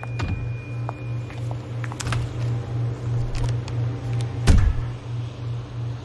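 Sound effect of a refrigerator: a low electric hum that throbs about three times a second, with small clicks and a heavy door thump about four and a half seconds in.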